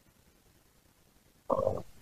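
Near silence, then about a second and a half in, a short, low vocal sound from a man.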